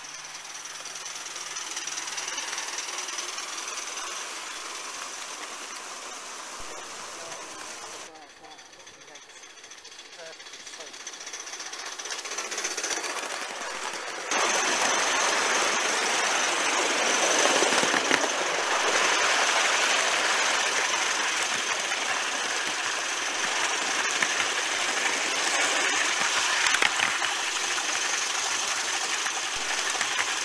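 Gauge One live-steam model locomotive and its coaches running on the track: a steady rushing, hissing noise. It dips about eight seconds in, then becomes much louder and closer from about fourteen seconds in, heard from on board the moving train.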